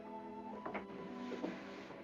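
Soft orchestral film score holding sustained notes, with a couple of brief clicks about halfway through.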